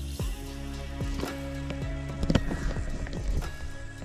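Background music of sustained held notes, with soft percussive hits now and then.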